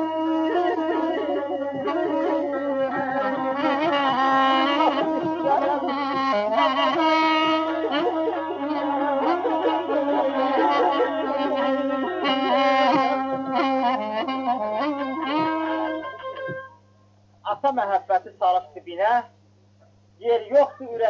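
Azerbaijani ashiq instrumental music, with a wind instrument carrying the melody, that stops about three-quarters of the way through. After a short pause, a voice speaks briefly.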